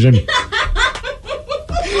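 People laughing: a string of short laughs and chuckles.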